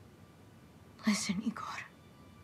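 A woman whispers a short word or phrase about a second in, breathy and low, over near-silent room tone.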